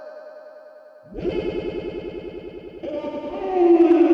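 Electronic music made from voice run through distortion, chorus and echo effects. A fading fluttering layer gives way about a second in to a new distorted fluttering layer. Near the end a louder tone slides down in pitch.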